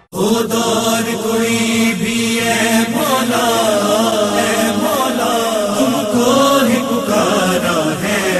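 Noha lament chanted by voices: a melodic line over a steady hummed drone, starting right after a brief break.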